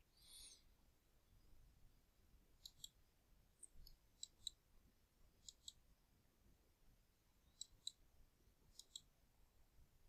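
Faint computer mouse button clicks: five quick double clicks spread over the stretch, with a brief soft hiss near the start.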